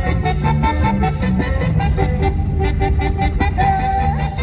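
Music with a steady beat and a melody carried by pitched instrumental notes, one note held near the end.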